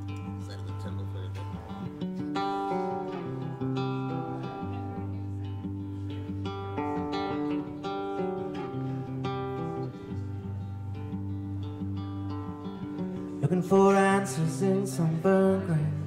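Live acoustic guitar picking a repeating pattern of notes over a steady low note. Near the end a louder melodic line with sliding pitches comes in briefly over the guitar.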